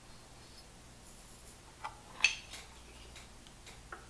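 Handling noise from a studio monitor's amplifier plate assembly being turned over in the hands: a few light clicks and knocks, two small knocks about two seconds in, the second the louder, over quiet room tone.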